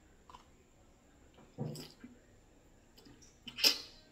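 Mouth and handling noises of someone tasting a piece of set gelatin. There is a soft sound about a second and a half in, then a short, sharp breathy noise near the end, the loudest sound, as the piece goes into the mouth.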